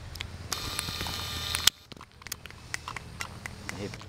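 Camcorder zoom motor whirring steadily for about a second, then stopping suddenly with a click. Faint scattered ticks follow.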